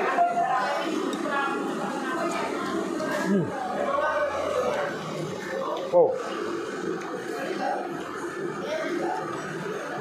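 Voices talking steadily in the background, with a man murmuring a low 'hmm' about three seconds in and a short 'oh' about six seconds in while eating noodles.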